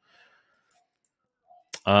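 Near silence with a faint room tone. A single computer-mouse click comes near the end, just before a man starts to say 'um'.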